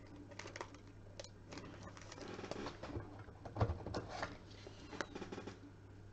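Faint rustling and light clicks of trading cards and their plastic packaging being handled, with a louder knock about three and a half seconds in, over a steady low hum.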